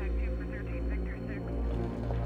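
A steady low drone, with faint voices in the background.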